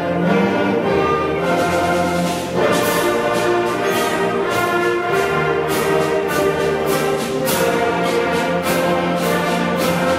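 A large middle school concert band playing, with flutes, clarinets, saxophones and brass sounding together in a school gymnasium. About two and a half seconds in, after a brief dip, a new phrase starts with regular percussion strikes about twice a second.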